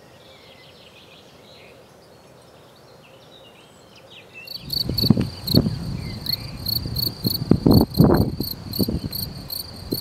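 Male European field cricket (Gryllus campestris) singing: a loud, high-pitched chirp repeated about three to four times a second. It is made by rubbing the forewings together, and it starts about four and a half seconds in, over irregular low thumps.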